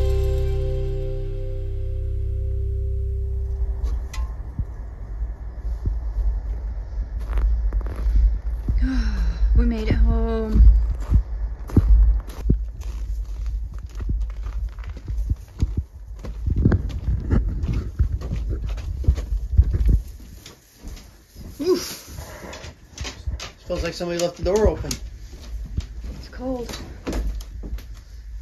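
Background music fading out over the first few seconds, then a low wind rumble on the microphone with footsteps and knocks while walking outdoors in snow. About twenty seconds in the rumble cuts off and a door thunks, followed by a quieter small room with brief voices.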